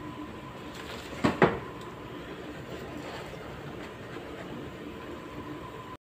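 Two sharp knocks in quick succession about a second and a half in, over a steady kitchen background hum.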